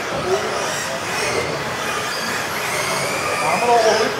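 Several electric RC off-road buggies racing, their motors whining and gliding up and down in pitch with the throttle, in a reverberant hall.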